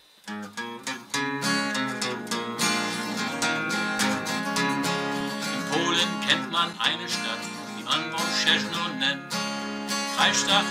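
Acoustic guitar strummed as the accompaniment to a blues song. About six seconds in, a man starts singing along to it.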